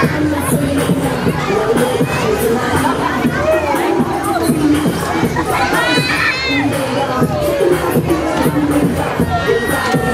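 Riders on a swinging Kamikaze pendulum ride screaming and shouting, many voices at once, with a loud burst of screams about six seconds in.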